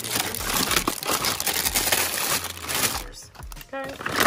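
Plastic razor packages crinkling and rustling as they are shuffled around in a plastic basket, for about three seconds before it quietens.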